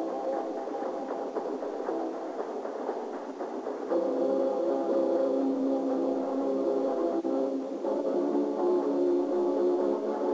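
Gymnastics floor-exercise accompaniment music: sustained held chords, which get louder as a new chord comes in about four seconds in.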